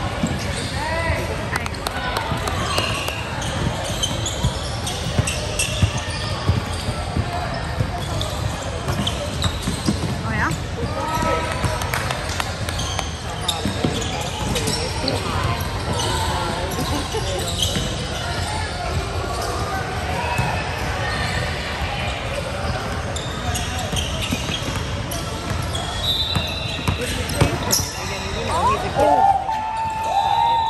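Basketballs bouncing on a hardwood gym floor during play, over a steady background of voices from players and spectators, echoing in a large hall.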